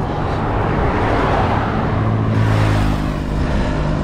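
A motor vehicle passing on the road beside the bicycle: a low engine hum and tyre noise swell and then fade over about three seconds.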